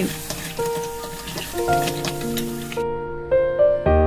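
Background music of sustained, piano-like notes over the sizzle of pieces of crab frying in hot oil with garlic and ginger as they are stirred. The sizzling cuts off suddenly about three-quarters of the way through, leaving the music alone.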